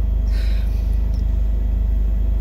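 A car engine idling steadily, a low even rumble heard from inside the cabin. A short breathy sound comes about half a second in.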